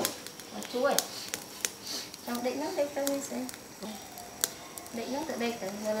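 People talking in the background, with scattered sharp crackles and pops from fish grilling over a charcoal fire.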